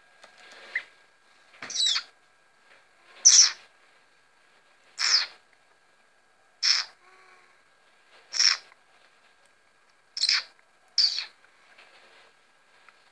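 Common blackbird giving short, sharp falling calls, about seven of them, one every second and a half or so, the last two close together.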